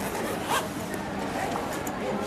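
Zipper on a small black bag pulled in one quick stroke about half a second in, as the bag is handled.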